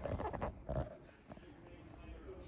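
A few short grunt-like noises and the rustle of a handheld phone being turned, then quiet room tone after about a second.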